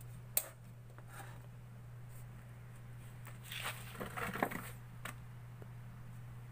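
Steady low electrical hum from a powered-up CRT television chassis and its test setup. A sharp click comes about half a second in, and a few short crackles and handling clicks come around the middle.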